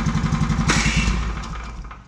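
A small Wiltec petrol engine running at idle is cut by its kill switch and dies out, fading to a stop over the last second. There is a short, harsh burst of noise about a second in.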